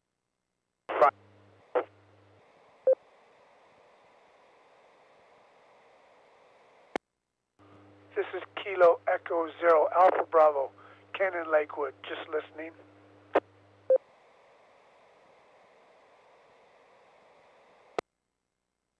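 Two-metre FM ham repeater traffic heard on a receiver: a short key-up with clicks about a second in, a few seconds of steady hiss, then a station calling in by voice for about five seconds over a low steady hum from the 100 Hz PL tone, followed by a click and a hissing squelch tail until the carrier drops at the very end.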